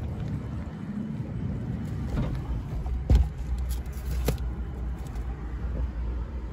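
Steady low rumble of a car, with a heavy thump about three seconds in and a sharper knock about a second later.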